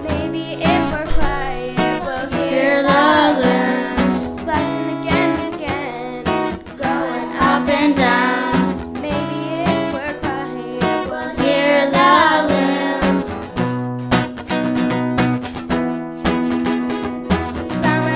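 Song with acoustic guitar strumming and a sung melody over it.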